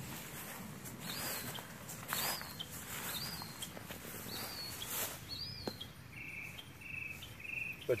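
Faint insects calling: a short high chirp repeated about once a second, joined from about six seconds in by a buzzy trill in short bursts, with a few faint clicks.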